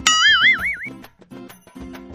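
A cartoon-style wobbling "boing" sound effect: a tone that springs up and wobbles in pitch for just under a second. Light, rhythmic background music follows.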